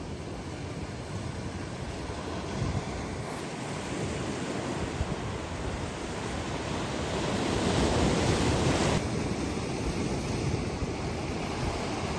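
Ocean surf washing and breaking against rocks at the shoreline, swelling louder about eight seconds in and dropping back sharply a second later.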